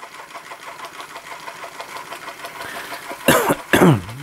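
Small 1950s Linemar tinplate toy steam engine running steadily, with a fast, even, light mechanical beat. Two short coughs break in near the end.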